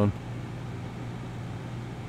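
A steady low hum over faint background hiss, with no other events.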